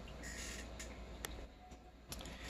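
Quiet handling noise as gift items are put down and picked up: a faint rustle and two light clicks near the middle.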